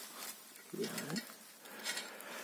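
Faint outdoor quiet with a short, low voice-like murmur about a second in and a faint click near the end.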